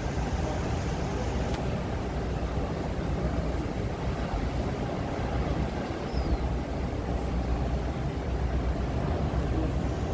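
Steady low rumble with a hiss above it, the continuous background on a ship's open deck, with no distinct event standing out.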